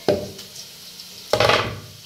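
Cut potato pieces tipped off a wooden chopping board into a stainless-steel colander: two short clattering bursts, one at the start and one about a second and a half in.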